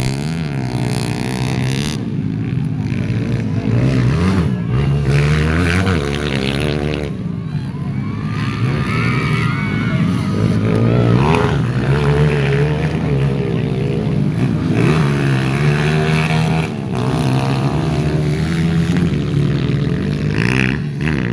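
Small motorcycles racing on a dirt circuit, engines revving up and down as the riders accelerate out of and back off into the corners.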